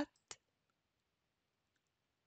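Near silence with two brief, faint clicks just after the start.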